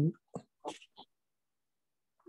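The tail end of a drawn-out "um", then three short, soft keyboard clicks in the first second as code is typed, then dead silence for the rest.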